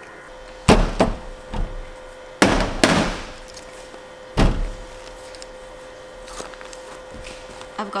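Plastic embroidery hoop being unclipped from the embroidery machine and taken off the sweatshirt: a handful of sharp clacks and knocks, two close together about a second in, a pair near three seconds and one more a little later.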